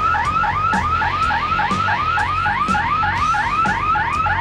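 Electronic siren sounding rapid rising whoops, about four a second: the signal starting a wave ski surfing contest heat.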